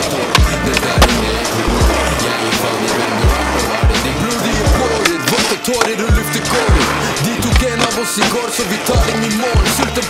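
Skateboard wheels rolling on pavement with sharp clacks of the board, over an instrumental stretch of a hip-hop beat with deep bass hits.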